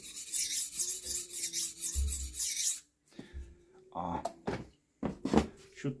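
Steel knife blade scraping across a handheld whetstone in a run of repeated sharpening strokes, which stop abruptly just under three seconds in. A few scattered knocks follow.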